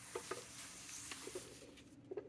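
Faint rustling and sliding of paper as sheets and a notebook are shifted across the table, with a few light knocks.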